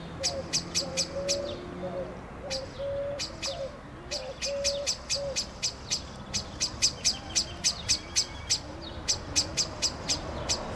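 Common blackbird giving series of sharp chinking calls, about five a second, broken by short pauses. The uploader takes them for alarm calls at a person's presence.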